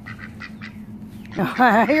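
A white Pekin-type duck giving rapid, soft quacks, several a second. About one and a half seconds in, a woman's loud laughter comes over them.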